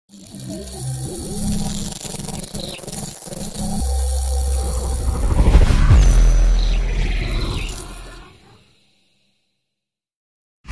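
Logo intro sound design: a cinematic sting with swelling whooshes and a deep rumbling bass that comes in about four seconds in, peaks around six seconds and fades out before nine seconds.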